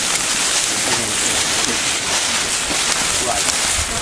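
A group of people walking through dry leaf litter: a steady crunch and rustle of many footsteps, with indistinct chatter underneath.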